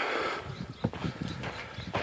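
A few irregular footsteps on a dirt hiking trail, after a breathy sound at the start.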